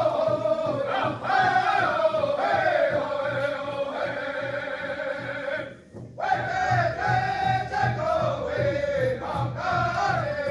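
Native American honor song sung in unison by a group of singers to a steady drumbeat of about three beats a second, the phrases falling in pitch. The singing breaks off briefly about six seconds in, then starts again.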